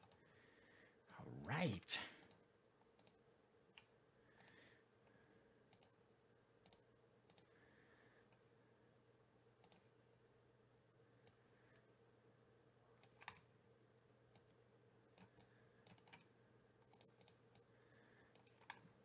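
Faint computer mouse clicks, single and in small clusters scattered over near-silent room tone, with a brief louder sound about a second and a half in.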